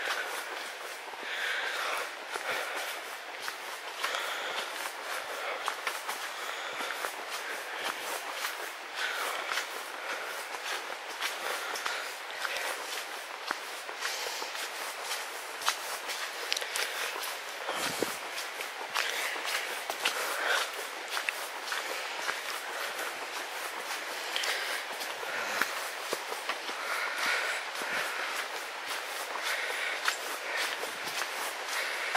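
Footsteps at a steady walking pace on a stony track strewn with fallen leaves.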